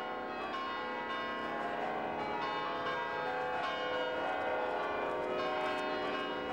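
Church bells pealing: a rapid, continuous run of overlapping bell strikes.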